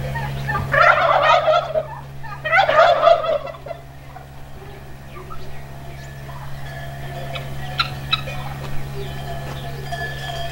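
Domestic turkey gobbling twice, once about a second in and again a second and a half later, each gobble a loud rapid rattle. Quieter scattered calls from the farmyard flock follow.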